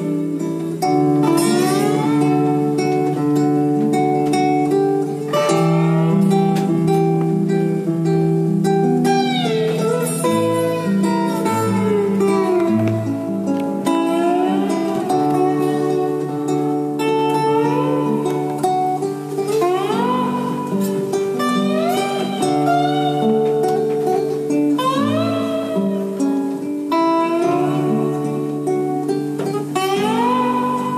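Acoustic guitar laid flat on the lap and played slide-style: steady plucked bass notes under a melody that glides up and down into its notes.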